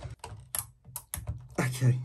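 A scatter of short, sharp clicks and light taps as a cordless drill is handled and fitted onto the chainsaw's clutch; the drill's motor is not running yet.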